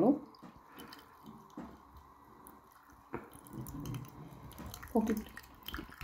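Liquid dripping and squishing as a wet cloth bundle is squeezed by hand over a steel bowl. It is faint, with a few scattered small drips.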